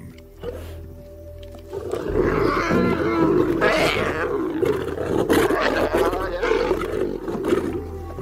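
Lions snarling and growling in a scuffle, as an adult lioness turns on a hungry cub to keep it from her kill. The snarling starts loud about two seconds in and goes on to the end, over music.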